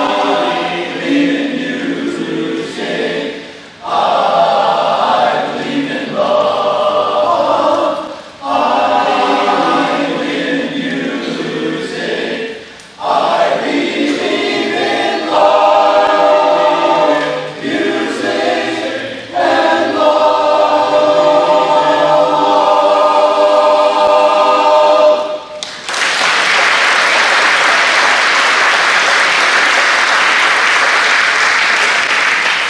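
Men's barbershop chorus singing a cappella in close harmony, in phrases with short breaks between them, ending on a long chord held for about six seconds. The chord cuts off about 26 seconds in and audience applause starts and runs on.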